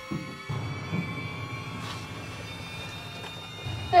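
Eerie horror-film background music: a sustained drone of held tones, with a few soft low thumps in the first second.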